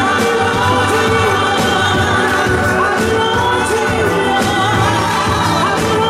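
Gospel choir singing over live instrumental accompaniment with a steady beat.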